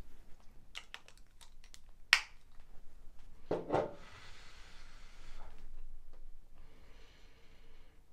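A person sniffing perfume sprayed on her wrist: small handling clicks with one sharper click about two seconds in, a short hummed "mm", then a long inhalation through the nose, followed by a second, fainter sniff near the end.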